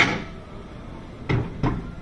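Metal clanks from a roller coaster train standing on its launch track: one sharp clank with a short ring, then two duller clunks in quick succession about a second and a half later.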